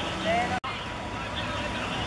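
A short shout from a voice on a football pitch, cut off abruptly about half a second in, followed by steady outdoor background with faint distant calls.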